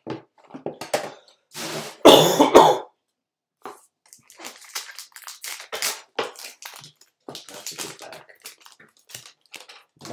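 A person coughs loudly once, about two seconds in. After that, a baseball-card pack's wrapper is torn open and crinkled by hand, with a run of short crackles and ticks as the cards are handled.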